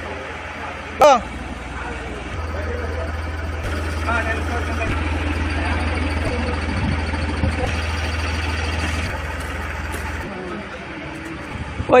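Maruti Ertiga VDI's 1.3-litre diesel engine idling steadily, a little louder through the middle. A short loud voice call comes about a second in.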